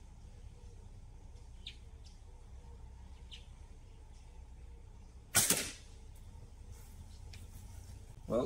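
A slingshot shot: the rubber bands release with one sharp snap about five seconds in, loosing a ball at a small metal spinner target.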